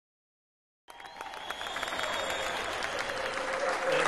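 A small audience applauding, starting abruptly about a second in after total silence and building in strength.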